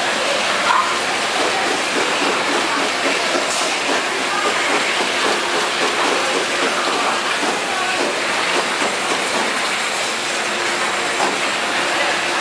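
Automatic plastic-bottle filling and capping line running: a steady, dense clatter of plastic bottles jostling along the stainless-steel conveyor and through the capping machine.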